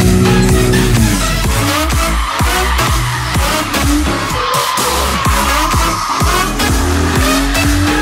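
Nissan 370Z's V6 engine held at high revs, then dropping about a second in. Its rear tyres squeal through the middle as it drifts, and the revs climb again near the end, over electronic music with a steady beat.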